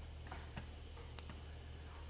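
Faint clicking at a computer desk, with one sharper click about a second in, over a low steady hum.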